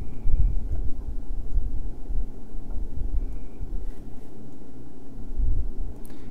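Low, uneven rumble on the recording microphone, with no speech.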